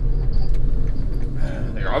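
Minibus engine and road noise heard from inside the cab while driving: a steady low hum.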